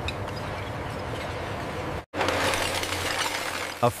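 Steady machine noise from a screw-auger conveyor moving glass cullet. After a sudden cut about halfway, it gives way to broken glass being crushed between the rollers of a grinder: a dense, continuous clinking and grinding of glass shards.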